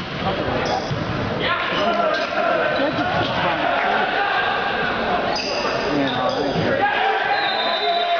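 A volleyball being struck during a rally in an echoing gym, the hits standing out over continuous talk and calls from players and spectators.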